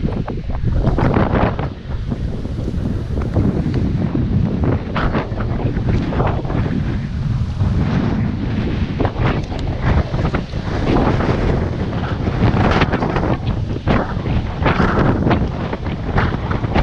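Wind buffeting the camera microphone: a loud rumble with irregular gusts.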